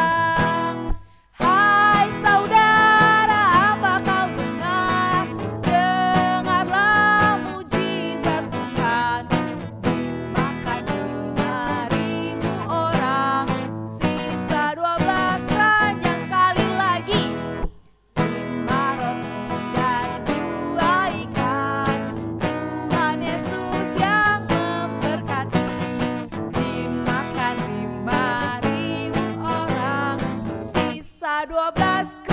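An Indonesian children's worship song sung by a woman's lead voice into a microphone, with other women's voices joining in, accompanied by strummed acoustic guitar. The music breaks off briefly about a second in and again around 18 seconds.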